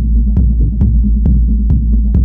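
Dark techno: a steady, driving kick beat a little over two beats a second, with sharp percussion strikes on each beat, over a deep, sustained bass.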